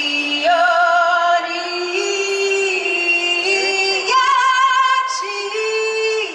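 A woman singing solo over the stadium PA, a slow melody of long held notes, some with vibrato.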